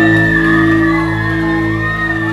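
Punk rock band playing live through a loud PA: a sustained electric guitar and bass chord rings steadily under a long, high held note, with shouting.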